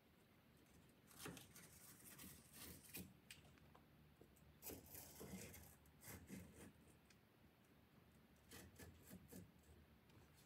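Faint, scattered scratches and rustles of decoupage paper being worked by hand against a wooden dresser front, in short clusters with quiet gaps between them.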